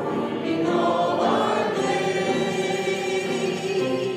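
Church congregation singing a hymn, passing from the last line of a verse into the refrain.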